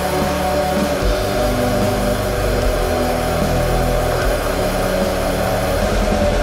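Black metal song playing: a dense, steady wall of distorted guitar over rumbling bass and drums, with a held note sounding high in the mix.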